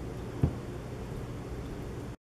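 A single dull, low thump a little under half a second in, over a steady faint background hiss.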